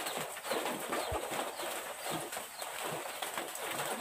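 Birds calling in short scattered notes, with small clicks, over a steady high hiss.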